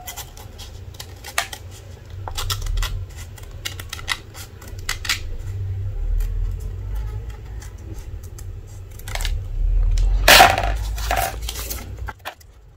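Small scissors snipping through a vinyl sticker and its paper template, in short, irregular cuts. Near the end comes a louder, longer burst of paper rustling and handling as the cut pieces are pulled apart.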